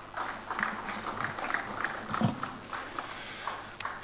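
Audience applauding, a dense patter of uneven hand claps.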